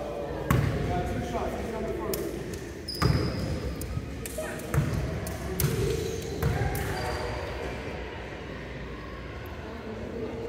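A basketball bouncing on a hardwood gym floor: a handful of sharp thuds over the first seven seconds, irregularly spaced, as the free-throw shooter dribbles. Voices chatter in the background.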